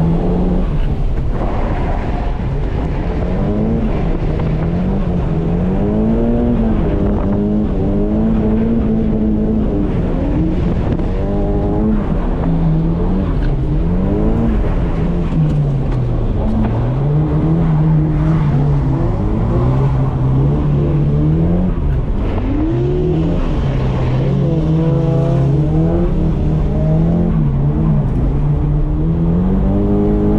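Nissan S15 Silvia's engine heard from inside the cabin, its revs rising and falling again and again as the car is driven hard through a lap of drifting.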